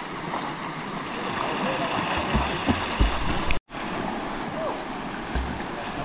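Steady rush of a flowing river, with people wading and splashing in the water and faint distant voices. A few low thumps come about halfway through, and the sound cuts out completely for an instant just after.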